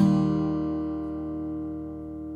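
Steel-string acoustic guitar, tuned D A D F# B E with a capo on, strummed once on its open bottom four strings to sound an E chord, which rings on and slowly fades.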